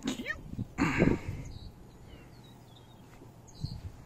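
A dog being brushed vocalizing: a short sound near the start, then a louder, longer one about a second in that slides up and down in pitch, and a quieter one near the end.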